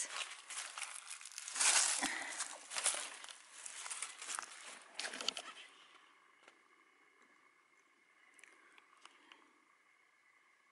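Footsteps crunching and rustling through dry leaf litter and twigs, with crackling for about the first five seconds, then dying away to a faint quiet background.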